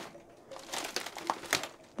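Faint crunching and crinkling with scattered light clicks, as of footsteps on a debris-strewn floor of a ruined wooden cabin.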